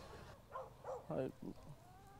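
A few faint, short vocal sounds, four in about a second.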